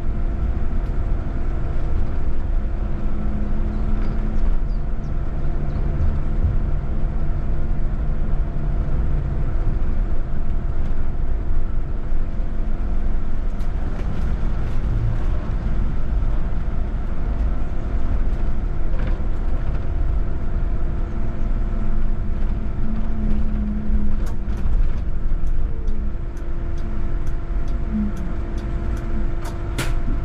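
VDL Citea electric city bus driving, heard from the driver's end: low road and tyre rumble under a steady electric hum, with a lower motor whine that swells and fades twice. A run of light clicks comes near the end.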